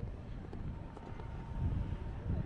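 Wind buffeting the microphone: an uneven low rumble that swells about one and a half seconds in. A faint steady high hum runs underneath from about a second in.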